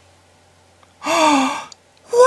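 A person's voice giving one short breathy wordless vocal reaction about a second in, like a gasp or sigh, lasting under a second with a slight dip in pitch. Low steady room hum lies underneath.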